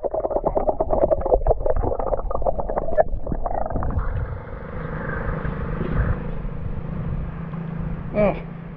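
Swimming-pool water splashing and sloshing around a camera held at the water's surface, muffled and irregular for the first few seconds. From about four seconds in it settles into a steadier wash of water with a low hum under it.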